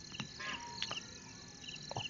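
Faint high-pitched chirping in short repeated pulses in the background, with a few soft clicks.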